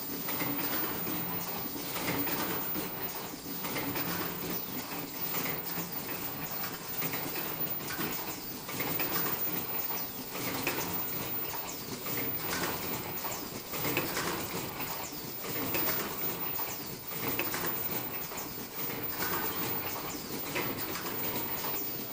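Fully automatic disposable flat face mask production line running: a steady mechanical din with many small clicks and knocks.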